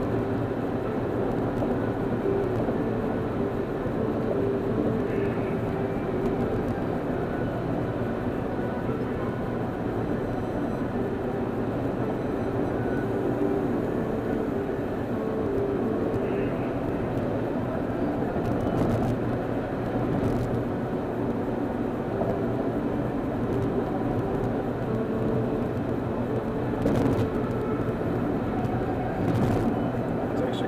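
Steady engine and tyre-and-road noise heard inside a car's cabin at freeway speed, with a few brief clicks in the second half.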